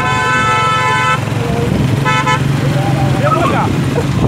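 A vehicle horn honking twice, a blast of about a second and then a short toot about a second later, over the steady drone of a small motorcycle engine and wind while riding.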